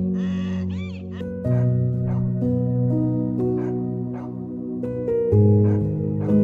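A donkey braying in repeated rising-and-falling calls that stop about a second in, over background music of slow held notes that runs on alone afterwards.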